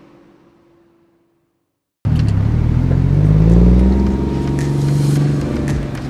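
After a fade to silence, a car's engine cuts in suddenly about two seconds in. It is a Toyota Mark II (110 series) with the 1JZ-GTE turbocharged straight-six, its pitch rising as the car pulls away and accelerates, then holding steady.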